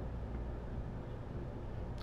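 Steady low background hum with a faint even hiss, and no distinct tool clicks or knocks.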